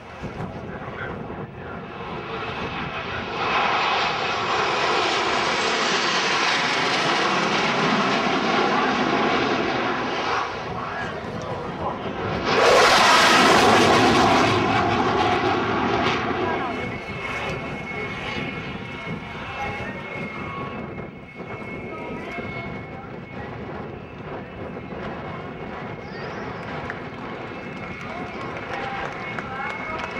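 Jet aircraft flying past in formation: the engine noise swells over several seconds, is loudest about 13 seconds in, then fades away.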